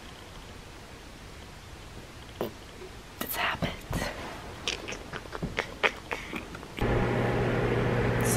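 Quiet room noise, then a scatter of faint clicks and rustles as a handheld camera is moved about. Near the end a steady low hum starts abruptly with louder room noise.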